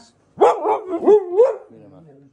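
Siberian husky 'talking': a loud run of howl-like syllables, rising and falling in pitch, lasting about a second.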